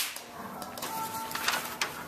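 A sharp click right at the start, then faint scattered clicks and taps in a small room.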